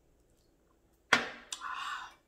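A drinking glass set down on the table with a sharp knock about a second in, followed by a brief breathy sound of about half a second.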